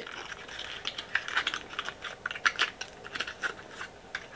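Long fingernails clicking and tapping on a plastic lip gloss tube and its wrapping as it is handled and unwrapped: a quick, irregular series of light clicks.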